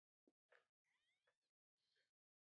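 Near silence: the soundtrack is all but muted.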